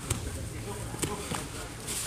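Grapplers working on a foam mat: about three short slaps or scuffs of hands and bodies on the mat, roughly a second apart, over indistinct background voices.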